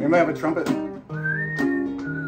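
Acoustic guitar strummed in chords, with a whistled melody coming in about halfway: one clear tone that slides up and then holds. A short wavering vocal sound comes just before it.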